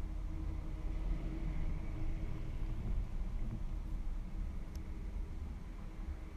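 Low, steady background rumble with a faint constant hum, and a couple of light clicks about four to five seconds in.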